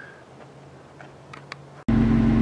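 Faint hum with a few light clicks, then near the end an abrupt cut to a Jeep Wrangler's engine idling loud and steady, heard from inside the cabin.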